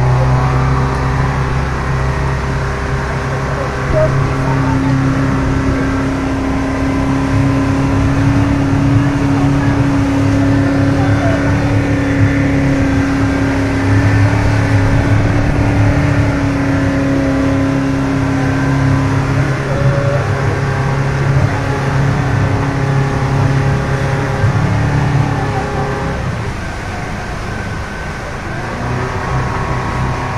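Motorboat engine running steadily at cruising speed: a loud, steady drone, with a higher hum that comes in about four seconds in and fades out around twenty seconds, over the rush of water from the wake.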